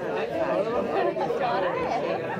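Several people talking at once, overlapping chatter echoing in a large indoor hall.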